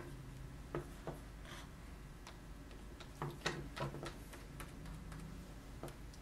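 Faint, scattered clicks and soft taps of a sculpting tool and fingers working a flat strip of plasticine clay on a wooden table, as the strip is cut in half, over a low steady hum.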